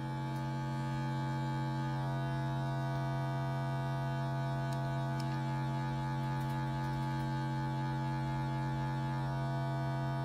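Steady synthesizer drone from a Richter Anti-Oscillator in a Eurorack modular system, holding one low pitch with a stack of buzzy overtones at an even level. The Quadrax function generator's modulation, triggered by a square-wave LFO, doesn't do much to it.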